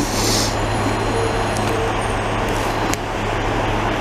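Snowblower and the dump truck it is loading, their diesel engines running steadily: a low drone under a broad rushing noise. A short hiss comes right at the start, and a single sharp click about three seconds in.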